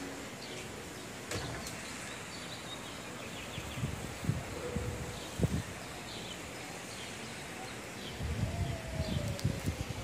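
Outdoor ambience: a steady wash of background noise with a few faint bird chirps, and irregular low rumbling bumps on the microphone midway and near the end.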